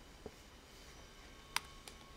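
Quiet room tone with a few small clicks, the sharpest about one and a half seconds in.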